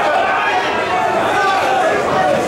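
Boxing crowd: a steady din of many overlapping spectators' voices.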